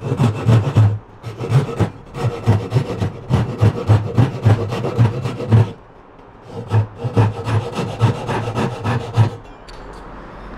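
Japanese double-edged (ryoba) hand saw cutting through a pine board on its coarse-toothed edge, in quick back-and-forth strokes of about two a second. The sawing pauses briefly around the middle, then resumes and stops shortly before the end as the cut goes through.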